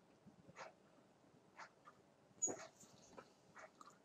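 Near silence: room tone with a few faint, short clicks scattered through it, the loudest a little past halfway.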